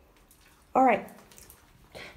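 A woman's voice says one short word, "All", with falling pitch, about three-quarters of a second in. The rest is a quiet room.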